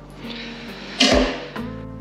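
Scissors snipping the tag end of bowstring serving thread, with one sharp cut about a second in, over soft background music.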